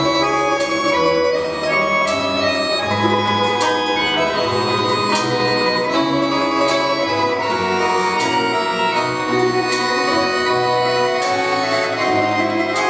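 Russian folk-instrument ensemble playing an instrumental passage: held accordion chords and melody over plucked guitars and gusli, with a regular beat of sharp attacks.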